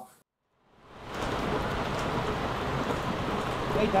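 Steady rain falling, fading in after a brief silence about a second in.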